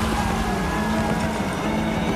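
Film soundtrack of a battle scene: dramatic music holding a sustained low note over a dense, steady low rumble of battle effects.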